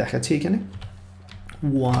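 Computer keyboard typing: a few separate keystrokes.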